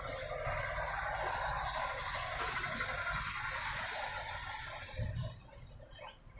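Wide flat paintbrush stroking gesso across a primed canvas: a steady scratchy swishing that eases off near the end, over a low rumble of passing traffic.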